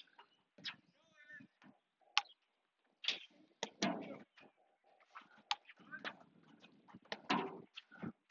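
Platform tennis rally: sharp knocks of paddles striking the rubber ball and of the ball bouncing, about eight of them at uneven intervals.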